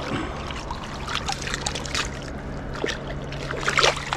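Shallow river water splashing and dripping around a pike held in a landing net, with a bigger splash near the end as the fish kicks free on release.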